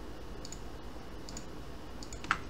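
Faint computer mouse clicks, two of them about a second apart, over a low steady hum.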